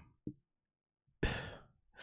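A man's single breathy sigh, an exhale close to the microphone, just over a second in; the rest is silent.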